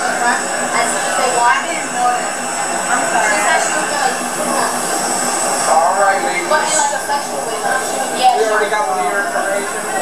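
Several people talking at once, muffled and indistinct, over a steady mechanical background hum.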